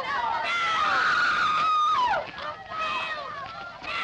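Several high-pitched voices screaming at once in long, overlapping cries. One cry slides sharply down in pitch about halfway through.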